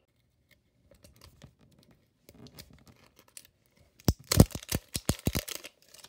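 A plastic toy Pokeball handled and pried at its seam: faint rubbing and scratching of the plastic, then a quick run of loud sharp cracks and clicks about four seconds in.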